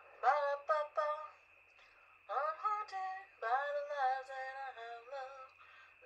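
A woman singing without clear words: a few short sung syllables at the start, then after a brief pause a run of longer held notes that slide and waver in pitch.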